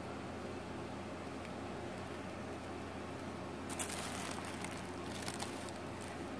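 Quiet steady room hum, with light rustling of hands handling the eyeshadow palette over crumpled tissue paper from about four seconds in.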